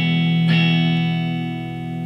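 E major chord on an electric guitar, sounded again about half a second in and left to ring out.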